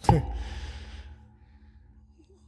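A person's short laughing exhale: a sudden breathy burst with a quick drop in pitch, the breath fading out over about a second.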